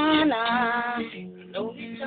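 Acoustic guitar strummed under a singing voice. The voice stops about a second in, and the guitar rings on alone, more quietly.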